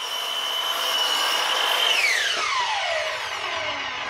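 Ozito electric mitre saw running and cutting through an MDF board, with a steady high whine. About two seconds in the trigger is released and the whine falls steadily as the motor and blade spin down.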